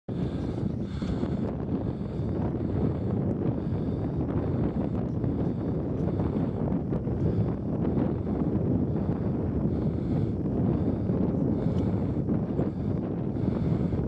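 Wind blowing across the camera microphone: a steady, low rush of wind noise.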